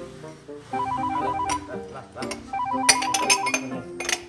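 Mobile phone ringtone: a rapid warble between two high tones, sounding in two bursts of about a second each, over background music.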